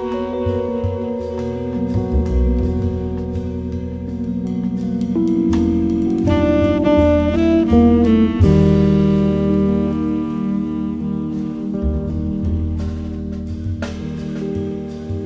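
Instrumental jazz: a saxophone plays the melody over guitar, double bass and drums, with a quick run of notes about halfway through and then longer held notes.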